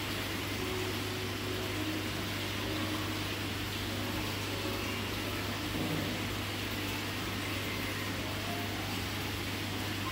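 Aquarium air pump running with a steady low hum, under a constant hiss.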